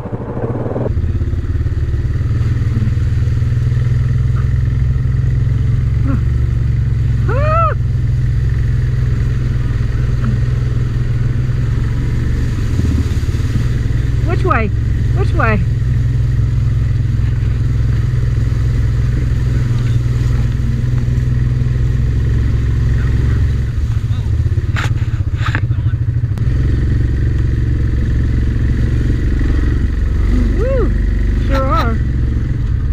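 Yamaha 700 ATV's single-cylinder engine running steadily at low trail speed as it drives through a shallow, rocky creek. There are a few sharp knocks about three-quarters of the way through.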